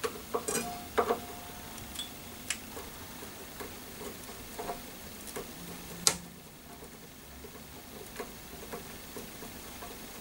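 Screwdriver working the small screws of a Taylor acoustic guitar's truss rod cover on the headstock: scattered small clicks and taps, with one sharp click about six seconds in.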